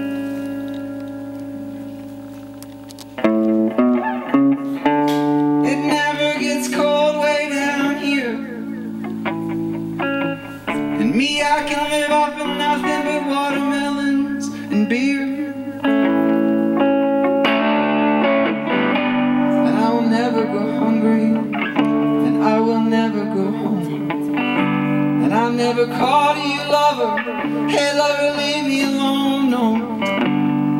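Electric guitar playing an instrumental break in a slow song: a held chord fades out over the first three seconds, then a strong strum about three seconds in leads into steady strummed chords and picked melody notes.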